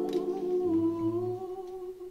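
A woman's voice holding one long, steady note into the microphone, with soft low accompanying notes underneath in the middle; the note fades away just before the end.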